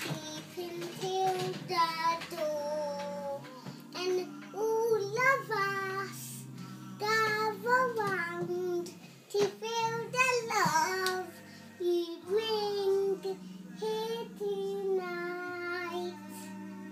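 A young girl singing a school song in phrases that glide up and down in pitch.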